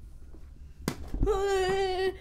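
A thrown football slapping into a boy's hands as he catches it, a little under a second in. Right after, the boy lets out a loud cry held at one steady pitch for most of a second.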